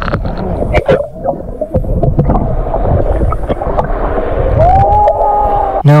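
Water splashing and rushing around a whale surfacing beside a boat, over a low rumble. Near the end there is a rising, then held tone lasting about a second.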